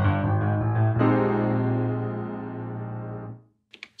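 Nord Stage 4 digital stage piano playing its grand piano sound with the Unison 3 setting, which gives it a thicker, chorus-like sound. A chord is struck at the start and another about a second in, then held and left to fade away before the end.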